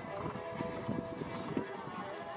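Horse cantering on a sand arena, its hoofbeats sounding as uneven dull thuds, over background music.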